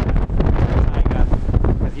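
Strong wind buffeting the microphone: a loud, rough rumble that rises and falls with the gusts.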